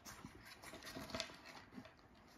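Six-week-old puppies scrambling over a wooden balance board, their paws scuffing and clicking on it and the board knocking softly as it tips under them; faint, with a small cluster of knocks about a second in.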